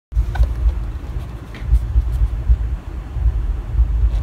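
Low, uneven rumble with a few faint clicks.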